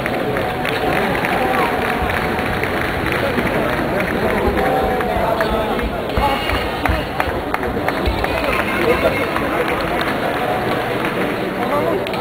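Crowd chatter in an indoor athletics arena: many voices talking at once, with scattered short knocks and clicks.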